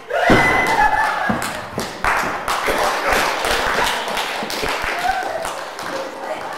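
Theatre audience bursting into loud laughter at an onstage pratfall, with scattered clapping joining in from about two seconds in.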